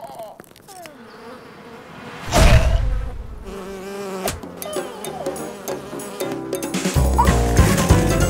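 Cartoon sound effects of bees buzzing. A loud hit comes about two seconds in, and a heavy, loud burst comes near the end.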